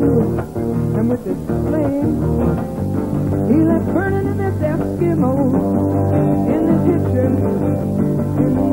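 Live music: a woman singing into a microphone over guitar accompaniment. Her voice slides up and down in pitch about halfway through.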